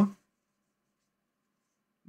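The end of a spoken word, then near silence with no audible handling sound.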